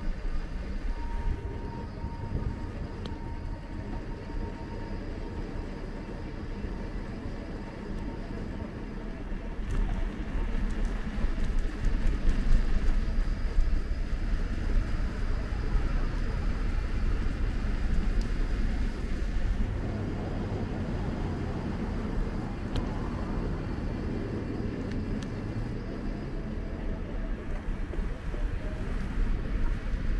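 Low wind rumble and road noise picked up by a camera on a moving bicycle rolling along a paved street, swelling for several seconds from about ten seconds in and then evening out.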